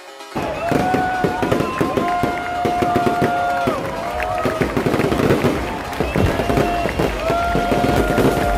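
Fireworks going off in rapid bangs and crackles over loud electronic dance music, starting suddenly just after the start; the music's held tones slide down in pitch every second or so.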